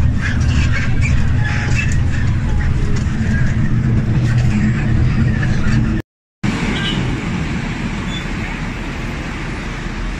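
Steady low engine drone and rumble heard from inside a moving air-conditioned city bus, with some rattling in the cabin. After a short break about six seconds in, it gives way to the even hiss of street traffic beside a bus.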